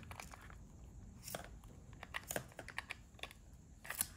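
Faint, scattered small clicks and rattles of a clear plastic USB hub and a USB cable plug being handled, as the plug is fumbled at the hub's port.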